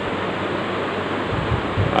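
Steady, even hiss of background noise, with a few faint low bumps in the second half.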